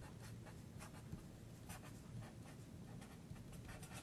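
Felt-tip marker writing on paper: a run of faint, short, irregular strokes.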